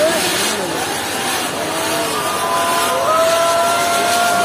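Firework frame (kambam) burning: fountains of sparks give a loud, continuous hissing rush. From about halfway through, several shrill steady whistling tones sound over it.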